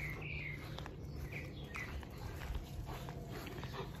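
A few short, faint bird chirps, most of them in the first two seconds, over a quiet background with a low steady hum.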